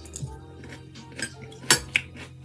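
A metal fork clinking against a plate several times, the loudest clink near the end.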